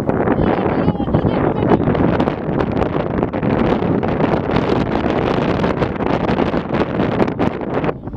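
Wind buffeting the camera microphone: a loud, unsteady rumbling noise that covers the field sounds, with faint voices mixed in.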